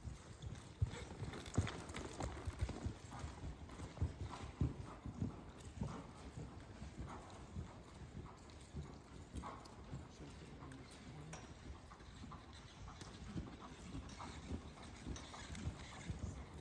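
Horse's hoofbeats thudding on soft dirt arena footing, a run of short low thuds, loudest in the first few seconds while the horse is close and fainter as it moves off.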